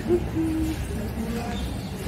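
A dove cooing: a few short, low hooting notes, each held steady, stepping down in pitch over a steady low rumble.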